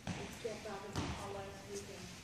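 Voices talking in the background, with two dull thuds about a second apart from books being shifted around in cardboard boxes.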